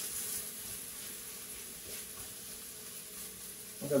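Ground turkey sizzling steadily in olive oil in a hot skillet on a gas burner, a little louder at first.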